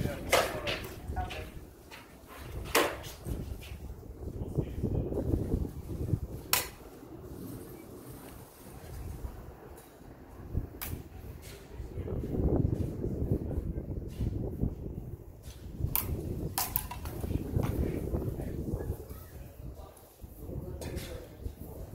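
Steel practice swords, a rapier against a jian, striking each other in sparring: about half a dozen sharp metallic clacks several seconds apart, some with a short ring. Underneath is a low rumble of wind on the microphone.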